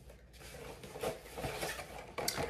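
Rustling and light clicking of a fabric bag being opened and handled, with a hairbrush in a clear plastic box being taken out. It starts about half a second in.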